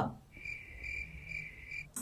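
Cricket chirping: one high, faint trill that pulses two or three times a second and lasts about a second and a half.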